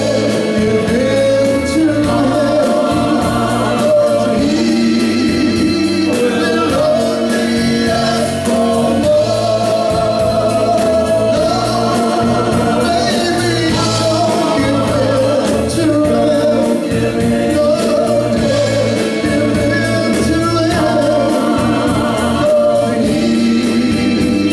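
Live band performance: a mixed male and female vocal group singing in harmony over electric guitars and a steady drumbeat.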